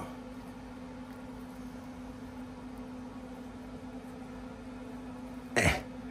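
A man clears his throat once, short and loud, near the end, over a faint steady low hum in the room.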